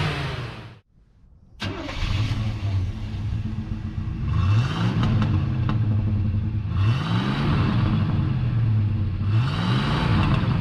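1986 Chevrolet C10's 305 cubic-inch V8 idling and being revved a few times, each rev rising and falling back to idle. The sound cuts out abruptly about a second in and returns a moment later.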